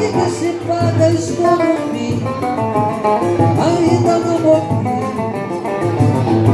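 Live acoustic folk song in Portuguese: plucked guitar and a small cavaquinho-type string instrument accompany singing, with the melody running on without a break.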